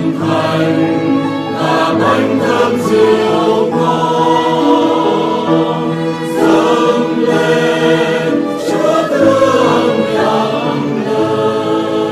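A choir singing a Vietnamese Catholic offertory hymn in held, slow-moving phrases.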